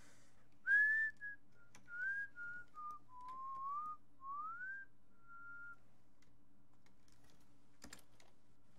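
A person whistling a short tune, a string of sliding notes for about five seconds that then stops. A few faint clicks sound under a low steady hum.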